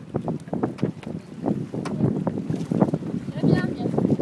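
People talking indistinctly over wind buffeting the microphone aboard a moving boat on open water.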